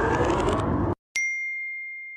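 Electronic music that cuts off suddenly about a second in, then a single bright ding, one clear bell-like tone that rings on and fades slowly: a logo sting sound effect.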